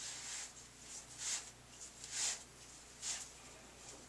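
Soft rustling of yarn-wrapped synthetic locs being unwound by hand, four short swishes about a second apart.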